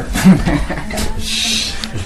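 A man's short, snorting laughs, with a brief rustle about halfway through.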